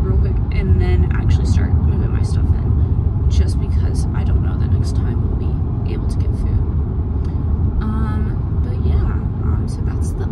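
Car cabin noise while driving: a steady low rumble of engine and tyres on the road, with faint voices and small clicks over it.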